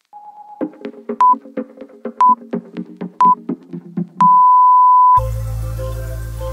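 Workout interval-timer countdown over electronic background music with a steady beat: three short beeps a second apart, then one long beep, which signals the start of the next exercise. Just after the long beep the music switches to a new track with a heavy bass.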